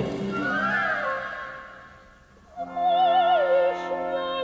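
Operatic soprano singing with a symphony orchestra. A held orchestral chord under a rising vocal line fades away over the first two seconds. The soprano comes back in about two and a half seconds in with a wide vibrato, over sustained low notes.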